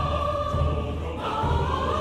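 Mixed choir singing sustained lines in Somali, with a low drum beat pulsing steadily underneath the voices.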